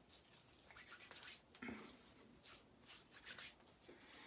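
Near silence with a few faint, soft rubs and pats of hands spreading aftershave balm over the face and neck.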